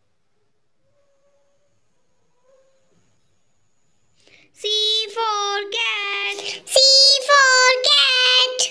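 Near silence for the first four and a half seconds, then a high child's voice sings a run of short, held notes that carries on past the end.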